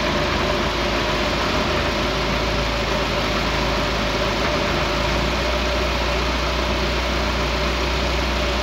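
Car engine idling steadily at about 900 RPM, its two-barrel carburetor's idle mixture just set for maximum manifold vacuum (about 20 inHg).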